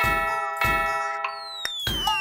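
Cartoon clock chime striking twice, half a second apart, each stroke a cluster of ringing bell tones: the last two of four strikes for four o'clock. About a second and a quarter in, a long whistle begins falling steadily in pitch.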